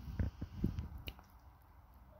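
Baby sucking on a pacifier: three or four soft, wet sucking sounds in the first second, then a faint click and quiet.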